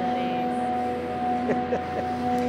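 A steady machine hum on one low pitch with its overtones, unchanging throughout. A brief voice sound comes about one and a half seconds in.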